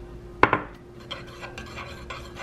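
A metal spoon stirring a drink in a ceramic mug, with light scraping and small clinks against the sides. A single sharp knock comes about half a second in.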